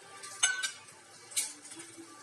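A few light clinks of stainless-steel kitchenware, about half a second in and again near a second and a half, one ringing briefly. Under them is the faint bubbling of a steel pot of spiced beetroot water that has just come to the boil.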